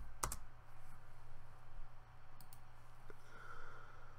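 A few sharp computer keyboard clicks: a close pair just after the start, then a few fainter ones later, as a search is finished and entered.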